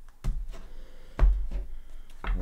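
A deck of tarot cards knocked and set down on a tabletop: a few dull thumps and taps, the loudest a little over a second in.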